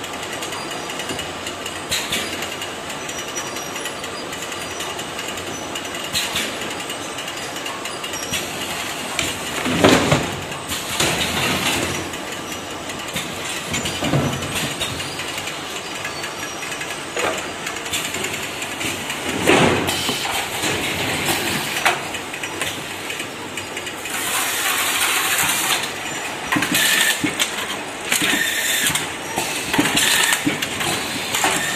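An automatic 20 L bucket filling and capping line running, with steady machine noise. Loud clunks come about ten, fourteen and twenty seconds in, then a couple of seconds of hissing and some rapid clattering near the end.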